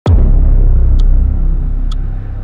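Title-animation sound effect: a deep bass boom that drops sharply in pitch as it hits, then holds as a loud low rumble that begins to fade, with two short glitchy ticks about a second apart.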